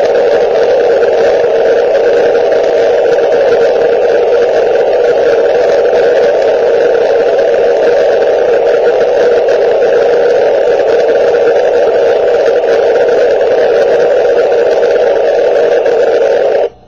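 Amateur radio transceiver's receiver giving loud, steady static hiss between calls to the International Space Station. No voice or signal comes through the noise, so no reply is heard.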